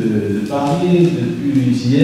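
Only speech: a man talking into a handheld microphone.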